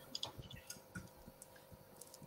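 Faint, irregular small clicks, several close together in the first second and a few more sparsely after, over a low steady background hum.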